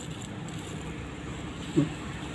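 Steady low background noise with no distinct sounds in it, and a brief voice sound near the end.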